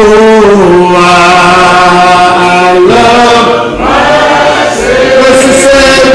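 A man singing a gospel hymn, holding long drawn-out notes with slow slides in pitch between them.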